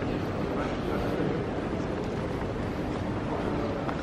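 Steady background noise of a group walking through a busy terminal hall, with a low rumble from a handheld camera carried along as they walk.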